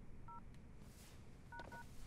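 Touch-tone keypad beeps from a cell phone as a number is dialled: three short, faint dual-tone beeps, one near the start and two in quick succession about a second and a half in.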